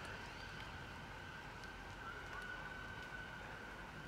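Faint, steady outdoor background noise with a thin, steady high-pitched tone running through it: distant city sound.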